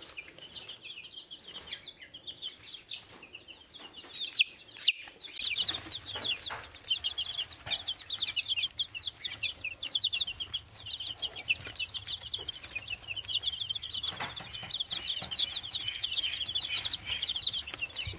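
Young chicks peeping: many short, high cheeps. They are sparse at first, and about five seconds in become a dense, overlapping chorus from a brooder full of Serama bantam and barred rock chicks, with a low steady hum underneath.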